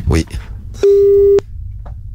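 A telephone line's ringing tone as a call is placed: one loud, steady beep about half a second long that stops abruptly with a click, followed by faint line hiss.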